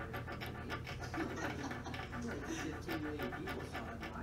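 Rapid soft clicking and scratching of a tattoo needle stirring pigment in a small plastic ink cap, several ticks a second. A faint wavering tone sounds in the background from about a second in.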